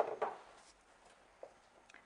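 Two soft knocks on a wooden kitchen worktop a quarter-second apart near the start, as things are set down on it, followed by a few faint handling ticks.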